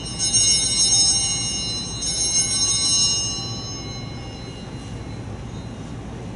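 Altar bells (Sanctus bells) ringing at the elevation of the chalice just after its consecration. They are struck twice, a couple of seconds apart, over the ring of an earlier strike, and die away about four seconds in.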